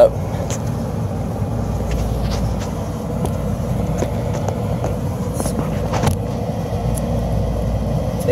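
Steady low rumble of outdoor rooftop background noise. A few faint light clicks come through it as needle-nose pliers squeeze electrical spade terminals tight.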